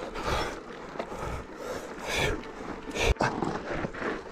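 Hard, rhythmic breathing of a rider hand-cycling up a steep climb, a breath roughly every half to three-quarters of a second, with a sharp knock about three seconds in.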